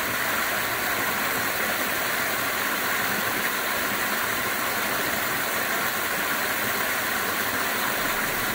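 Small waterfall spilling over a rock ledge into a pool: a steady rush of falling water.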